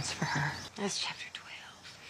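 Quiet film dialogue: a woman speaking in a low voice.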